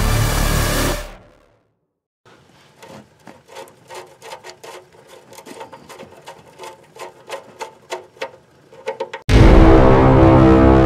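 Quiet, irregular metallic clicking and ticking, a few clicks a second, with a slight ring, as hands work the oil drain plug loose. Loud music fades out in the first second before it and starts again suddenly near the end.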